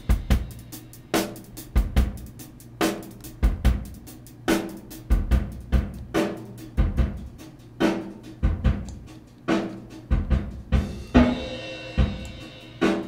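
Rock drum loop at 72 bpm, with kick, snare and hi-hat, playing through a convolution reverb loaded with a small-room impulse response made from a Behringer Neutron synthesizer's white noise. The reverb's dry/wet mix is being changed while it plays.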